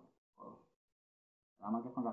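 A man's lecturing voice with a short pause: a brief vocal sound about half a second in, about a second of dead silence, then talking resumes near the end.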